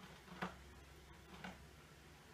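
Two light clicks about a second apart.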